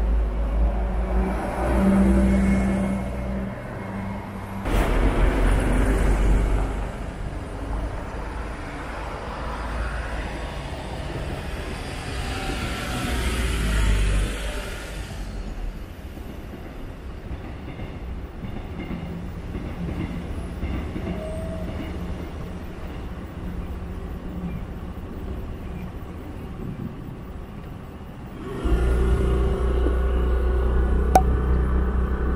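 Road traffic passing a crosswalk: vehicles rumble by in waves, with the loudest pass building and fading between roughly twelve and fifteen seconds in, a quieter stretch after it, and heavy low rumble returning near the end.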